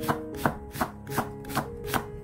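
Chef's knife slicing an onion on a wooden cutting board: about six even strokes, roughly one every third of a second, each ending in a sharp knock of the blade on the board.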